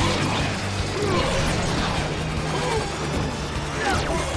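Action-scene sound effects over a dramatic music score: repeated crashes and impacts, with short swooping zaps of energy blasts.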